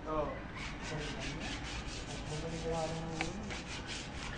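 Sandpaper rubbed by hand along a metal railing in rapid, even strokes, prepping it for paint.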